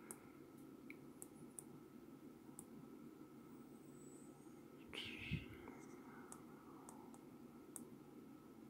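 Near silence, with a few faint clicks from the small tactile push button on a frequency counter module being pressed, and a soft hiss with a low thump about five seconds in.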